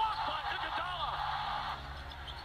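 Basketball game TV broadcast audio: a play-by-play commentator's voice over arena crowd noise, with the crowd noise dropping away near the end.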